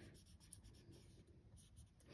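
Purple felt-tip marker colouring in on a paper printable: very faint scratchy strokes.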